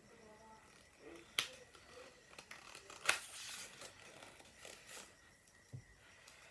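Pages of a paperback picture book being handled and turned: a sharp click about one and a half seconds in, then a louder, brief paper rustle about three seconds in.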